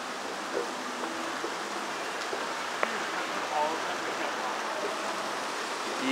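Water of an indoor decorative fountain running steadily, with faint voices in the background.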